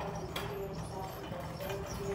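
Busy store background: a murmur of distant voices with a few sharp clacks and knocks on the hard floor.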